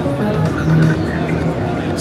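Modal Electronics polyphonic synthesizer playing a sustained pad of held chords through its digital output card's chorus and delay effects, with a flanger being dialled in to sweep the sound.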